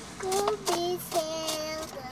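A young girl singing three held notes, the last one the longest.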